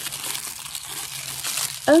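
Thin tissue paper crinkling and rustling as it is unfolded by hand, with a steady run of small crackles.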